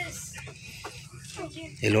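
Hot Wheels blister-pack cards being shuffled and lifted off a shelf: light clicks and rustles of plastic and cardboard, with faint, brief pitched sounds in the background.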